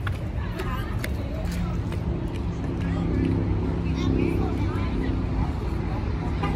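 Indistinct voices of a group chattering, over the steady hum of a vehicle engine and a low outdoor rumble.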